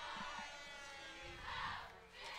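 Faint open-air football stadium ambience during a kickoff: a thin, steady pitched tone over a distant crowd, with a soft swell of crowd noise near the end.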